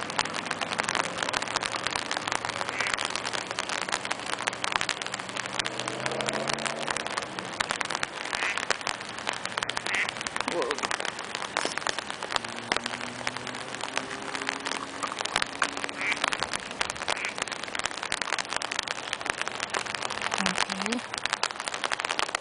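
Rain pattering on an umbrella overhead: a dense, steady spatter of drop ticks, with faint voices underneath at times.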